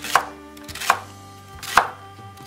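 Kitchen knife slicing a celery stalk on a wooden cutting board: three separate chops, each a sharp knock of the blade through the stalk onto the board, about one every second.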